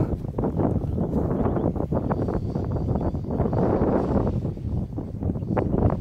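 Wind buffeting the microphone on a very windy day: an uneven low rumble that gusts up and down.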